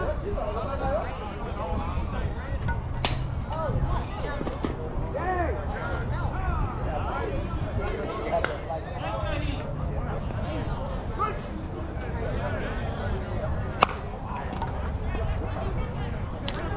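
Indistinct shouting and chatter from players across a softball field over a steady low rumble. About fourteen seconds in, a single sharp crack of a slowpitch softball bat hitting the ball.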